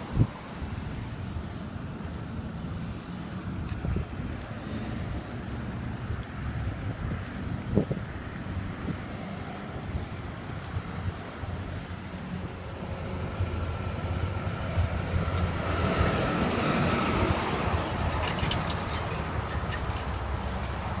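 Wind buffeting a phone microphone over a low rumble, with a few sharp thumps. In the last third a louder rushing noise swells and then eases.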